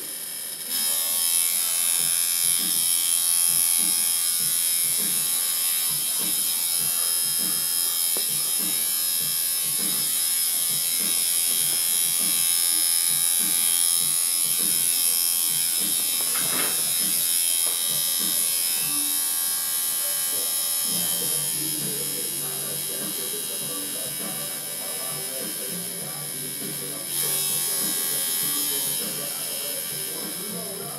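Electric tattoo machine buzzing steadily as it runs during outline work, starting about a second in.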